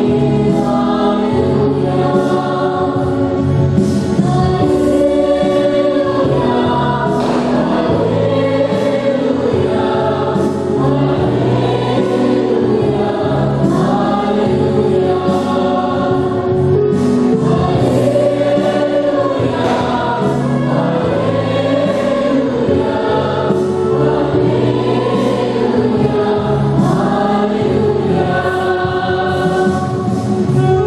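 Church choir singing a hymn with instrumental accompaniment, the voices holding long notes over a bass line that moves every second or two.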